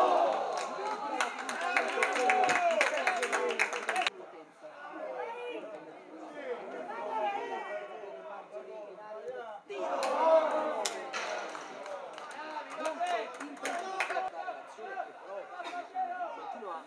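Many voices shouting and talking over one another at a football match, with sharp claps in the first four seconds and again from about ten seconds in. The sound drops off abruptly about four seconds in and comes back about ten seconds in.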